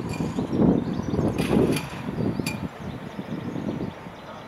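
Gusty wind buffeting the microphone in uneven low rushes, with three or four short metallic clicks between about one and a half and two and a half seconds in.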